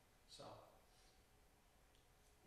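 Near silence: faint room tone after a single short spoken word.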